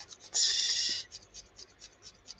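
Felting needle stabbing repeatedly into wool roving, a faint scratchy pricking at about six pokes a second. A louder hiss of about half a second comes near the start.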